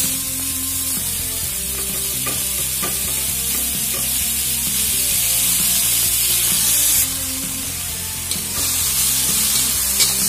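Chopped khutura (amaranth) greens frying with a steady sizzle in an aluminium kadai, stirred with a spatula. The sizzle eases a little about seven seconds in.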